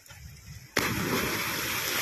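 A person diving into the sea: a splash starts suddenly about three-quarters of a second in and carries on as loud water noise for over a second, then cuts off.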